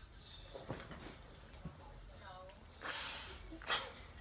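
Quiet, close-up human voice sounds and breaths: a brief murmur about two seconds in, then two short breathy rushes, one around three seconds in and one just before the end.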